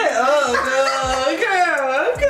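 High-pitched voice-like sounds with long sliding pitch, over background music with a low, regular beat.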